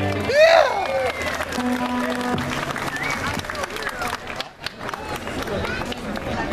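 A live band with saxophones plays the last notes of a song. There is a loud sweeping vocal cry about half a second in and a held note around two seconds. Then the music gives way to scattered applause and crowd noise.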